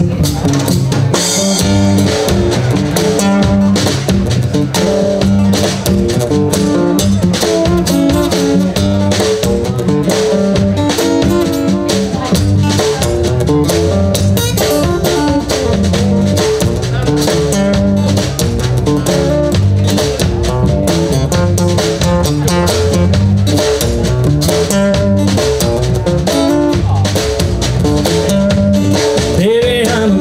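Live blues trio playing an instrumental passage: acoustic guitar, plucked upright double bass and drum kit keeping a steady groove.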